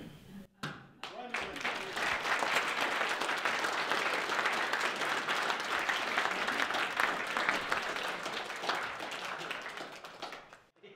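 Audience applauding: the clapping starts about a second in, builds quickly to a steady patter, then eases off near the end.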